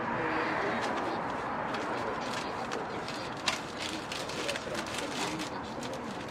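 Busy street-market background noise with faint distant voices, over which come a scatter of small clicks and rustles as a crepe is folded and handled at the stall; one sharper click stands out about three and a half seconds in.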